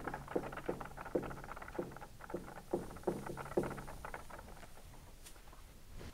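Marker writing on a whiteboard: a run of short, irregular strokes a few tenths of a second apart, which thin out about three and a half seconds in.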